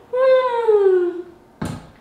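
A woman's drawn-out wordless vocal sound falling in pitch, just after a sip from a metal cup, then a single dull thump near the end as the cup is set down on the floor mat.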